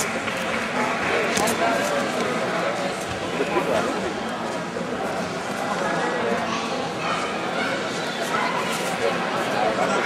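Spectators' voices: a steady din of overlapping talking and shouting from a crowd watching a grappling match.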